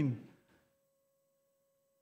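A man's spoken word trails off, falling in pitch just at the start, then near silence with only a very faint steady tone.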